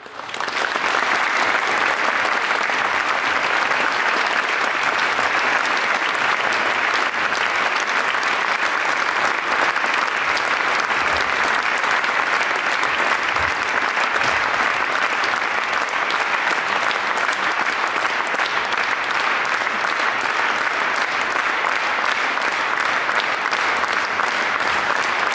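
Audience applause, rising to full strength within the first second and then holding steady as dense, even clapping.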